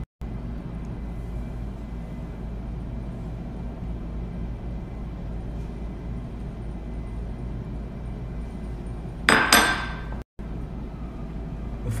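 Steady low background hum. About nine seconds in comes a single loud clink of kitchenware, with a short metallic ring.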